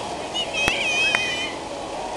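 A young child's high-pitched squeal that bends up and down, lasting about a second, over steady background noise, with two sharp clicks half a second apart in the middle.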